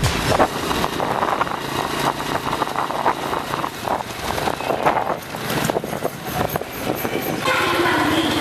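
Road and traffic noise heard from a vehicle driving along a street: a loud, uneven rumble and hiss with scattered knocks. About seven and a half seconds in, people's voices come in.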